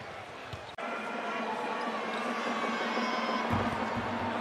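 Basketball arena ambience: crowd noise with faint music over the public-address system, broken by an abrupt cut a little under a second in. A basketball bounces once on the hardwood floor near the end.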